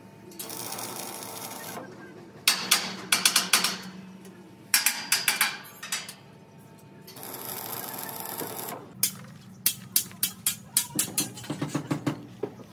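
Metalwork on a steel-tube bus body frame: two short spells of crackling welding hiss, each a second or so long, with runs of sharp metal taps between and after them, several a second.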